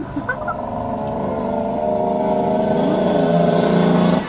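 A motor vehicle engine running close by with a steady pitch, growing louder toward the end.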